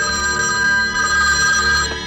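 A telephone ringing: one steady, trilling ring that lasts nearly two seconds over low music.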